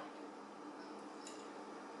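Quiet room tone: a faint steady hum with a couple of faint ticks about a second in.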